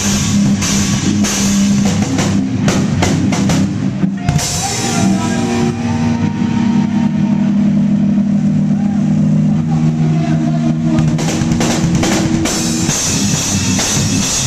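A live rock band played loud from behind the drum kit: fast drumming with steady cymbal crashes, then from about four seconds in the drums drop away under held guitar chords, and the drumming comes back in near the end.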